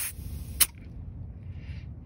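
A pencil-type tire gauge on a trailer tire's valve stem: a short hiss of air trails off at the start, then one sharp click about half a second in as the gauge comes off the valve.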